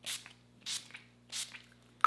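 Pump-mist bottle of Urban Decay All Nighter setting spray being sprayed onto the face: three short hissing spritzes, about one every 0.6 seconds.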